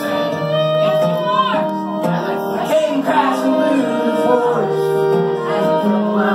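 Live country-folk song: a steel-string acoustic guitar played with singing voices over it.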